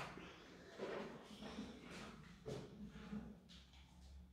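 Plastic water bottle being unscrewed: a few faint crackles and clicks from the cap and the thin plastic bottle being gripped and twisted.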